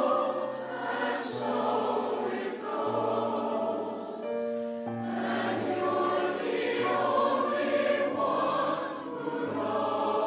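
Large mixed choir singing a slow song in held chords, with a brief break in the singing about four seconds in.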